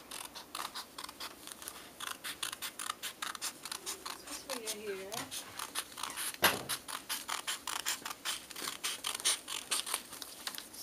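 Scissors snipping through a sheet of paper in quick, irregular cuts, a few a second, busier from about two seconds in, with one louder click about halfway through.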